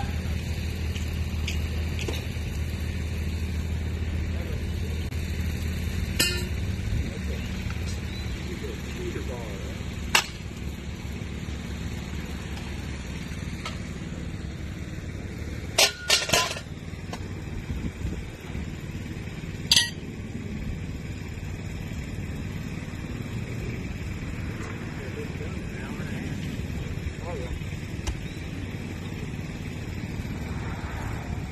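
An engine drones steadily, loudest over the first several seconds and then fading into the background. Over it come a few sharp metallic clinks, the loudest a quick cluster about halfway through.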